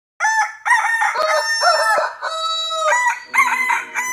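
Rooster crowing: a run of cock-a-doodle-doo calls, each with held notes.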